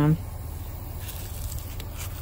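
The tail of a spoken word, then a low steady rumble with a few faint clicks about a second in.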